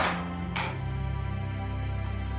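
A sledgehammer blow on sword steel at the anvil rings out sharply at the start, with a fainter second impact about half a second later, over steady background music.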